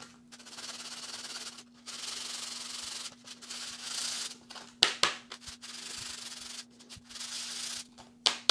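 3D-printed PLA stamp rubbed face-down on 220-grit sandpaper, a scratchy hiss in runs of about a second with short pauses between, smoothing the printed surface texture off the stamp's top face. A few light clicks about five seconds in.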